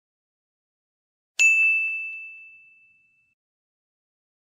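A single bright bell-like ding sound effect: one strike about one and a half seconds in, ringing on one clear tone and fading away over about a second and a half, in otherwise dead silence.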